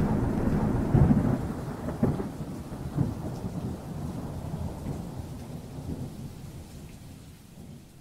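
Thunderstorm sound effect: rain hiss with rumbling thunder, three low rolls about a second apart in the first few seconds, then the storm fades steadily away.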